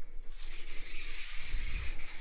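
Birds chirping and calling in a steady background chorus, with a low rumble of handling or footsteps near the end.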